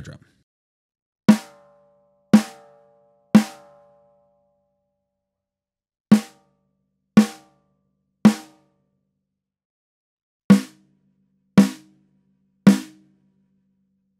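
Snare drum muffled with a full-size Evans EQ Pod gel on its batter head, struck with single hits about a second apart in three sets of three, with the gel moved on the head between sets. The ring is longest in the first set and dies away more quickly in the later ones.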